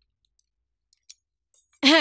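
A few faint clicks of chopsticks and spoons against porcelain bowls during a meal. Near the end comes a short, loud vocal sound, falling in pitch.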